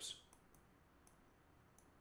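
A few faint, sharp clicks from a computer mouse, in near silence.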